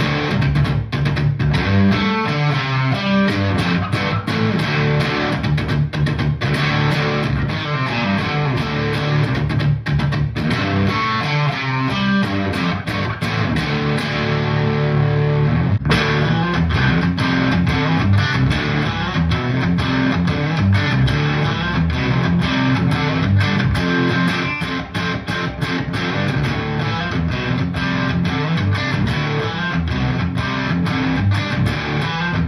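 Custom 28.5-inch-scale electric baritone guitar with Sun Bear Beartron pickups, played through an amp, picking and strumming low-tuned riffs. About halfway through, one riff fades and a new one starts abruptly.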